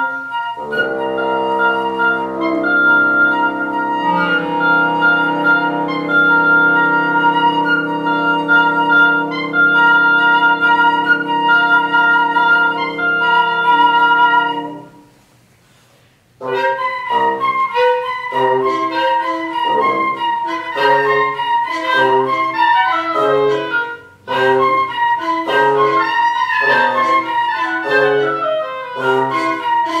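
Woodwind quintet of flute, oboe, clarinet, bassoon and horn playing chamber music: a held chord of long notes for about fifteen seconds, a short pause, then quick, short, repeated notes in a lively rhythmic pattern with one brief break.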